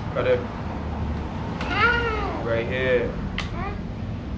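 A toddler's high-pitched wordless vocalising: a few short squeals and babbles that rise and fall in pitch, the longest about two seconds in.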